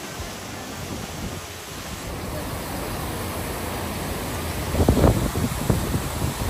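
Waterfall pouring into a narrow rock gorge: a steady rush of falling water. About five seconds in, a few louder low gusts of wind buffet the microphone.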